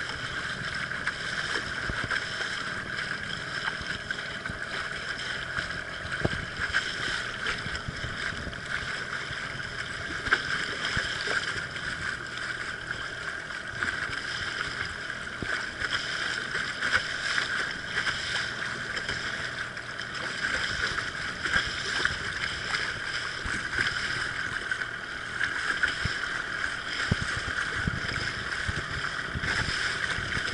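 Small boat's motor running steadily under way, a constant whine with occasional light knocks from the hull on the chop.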